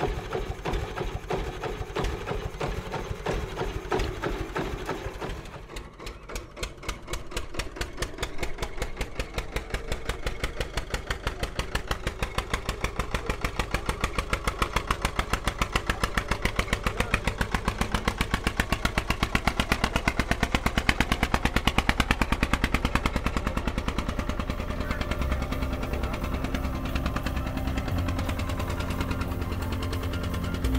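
Vintage tractor engine running with a fast, even chug. About six seconds in it drops away briefly, then picks up and runs steadily as the tractor drives off.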